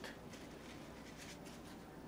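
Faint swishes of a paintbrush working oil paint: a light stroke near the start, then several quick strokes past the middle.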